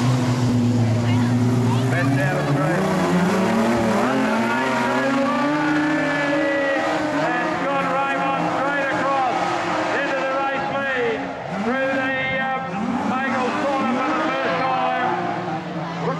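Engines of two modified production sedan speedway cars racing on a dirt oval. The engine note holds steady at first, then climbs and falls again and again as the drivers rev up and back off through the turns.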